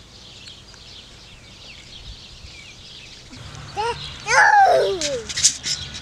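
Faint birds chirping in the background. About four seconds in, loud laughter breaks out, with high squealing voices sliding down in pitch.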